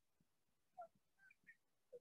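Near silence, broken by a few faint, brief chirps about a second in and again near the end.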